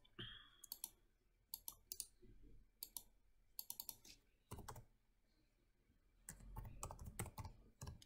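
Faint computer keyboard keystrokes and mouse clicks, coming in short clusters of sharp clicks.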